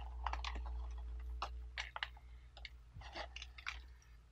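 Scattered light crackles and clicks from a pressed pu-erh tea cake and its paper wrapper being handled, over a low steady hum.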